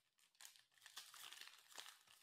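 Foil wrapper of a Panini Prizm basketball retail pack crinkling faintly as it is torn open by hand, with small crackles from about half a second in.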